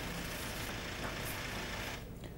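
Faint, steady outdoor background noise with a low rumble, the natural sound of the roadside news footage.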